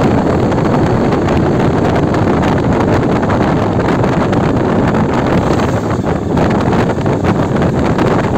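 Steady wind rush over the microphone of a Yezdi Adventure motorcycle riding at about 40–50 km/h, with the bike's 334 cc single-cylinder engine running underneath.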